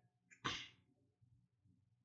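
A man's single brief, sharp breath about half a second in.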